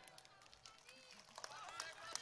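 Near silence, with faint distant voices that grow slightly louder in the second half.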